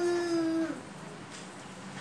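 Conch shell (shankh) blown by a small child: one steady note, sinking slightly in pitch, that stops about three-quarters of a second in.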